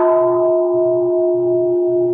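A Buddhist bowl bell struck once, ringing on with a steady, clear tone.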